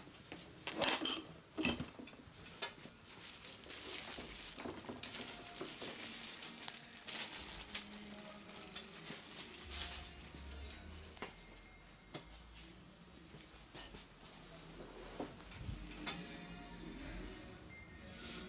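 Crinkling and rustling of a clear plastic sheet and paper being handled by a barber, with scattered clicks and clatter from the barber's chair and tools; a burst of sharp knocks about a second in is the loudest part.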